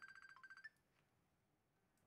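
A faint, quick run of short electronic beeps in the first moment, then near silence.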